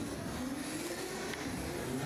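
Steady low background noise of a boxing arena with a seated crowd, with no distinct events.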